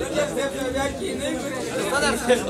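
Indistinct talking voices, chatter with no clear words.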